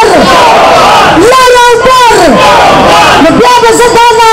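A woman shouting long, drawn-out protest calls into a hand microphone, very loud and distorted, with a crowd's voices between her calls.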